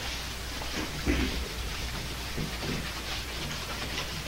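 Chalkboard eraser wiping the board in repeated dry scrubbing strokes as the writing is cleared off, over a low steady hum.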